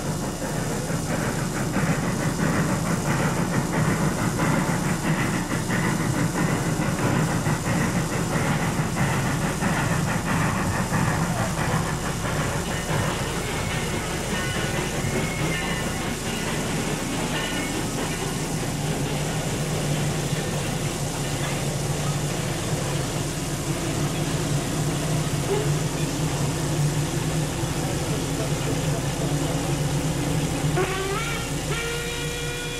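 1920 Baldwin narrow-gauge steam locomotive running, with rapid chuffing through the first dozen seconds that gives way to a steadier hum.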